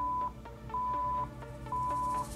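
Electronic countdown-timer beeps, three of them a second apart, each about half a second long at the same pitch, counting down the last seconds of an exercise interval over background pop music.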